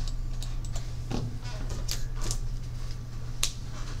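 Classroom room tone: scattered light clicks and taps from students working at their desks over a steady low hum. The sharpest click comes about three and a half seconds in.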